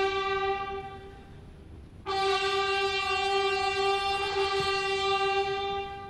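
A ceremonial brass fanfare playing two long held notes at the same pitch. The first fades out about a second in, and the second comes in sharply about two seconds in and holds until near the end.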